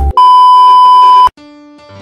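A loud, steady electronic beep at a single pitch, lasting about a second and cutting off abruptly, followed by soft, held music notes.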